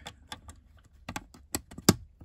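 LEGO bricks clicking as a lintel is pressed down onto the top of the walls: a run of small plastic clicks, the loudest near the end.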